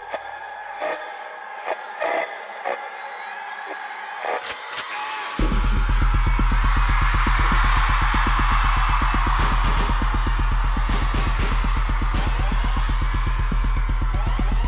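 Live arena concert: a crowd cheers over a quiet intro with scattered sharp clicks, then about five seconds in a loud electronic dance track with heavy bass and a fast, driving pulse kicks in.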